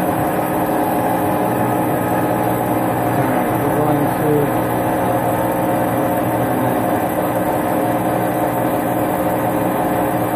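Hardinge AHC chucking lathe running, its spindle turning the workpiece under a stream of coolant: a steady mechanical hum made of several constant tones.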